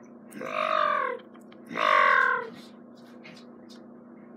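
A cat meowing twice, two drawn-out calls each just under a second long, the second a little louder.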